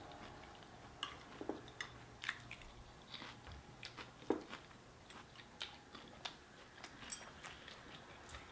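Faint crunching and chewing as crispy fried chicken and salad are eaten, a scatter of sharp little crackles with one louder crunch about four seconds in.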